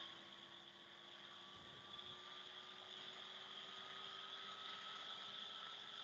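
Near silence: faint steady hiss with a faint hum.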